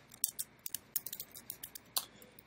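Computer keyboard keys clicking while code is typed: about a dozen light, uneven keystrokes, the last one the loudest.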